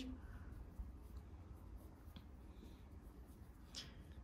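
Near silence: faint rustling of yarn being worked with a metal crochet hook, with a few soft ticks, over a low steady room hum.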